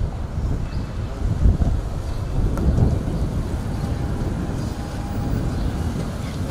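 Street traffic passing, with wind buffeting the microphone: a steady low rumble that swells now and then.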